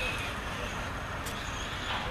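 Faint whine of a distant Traxxas Slash 4x2 electric RC truck driving over dirt, under steady wind noise on the microphone.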